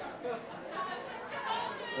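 Indistinct chatter of several people talking in the room, away from the microphones.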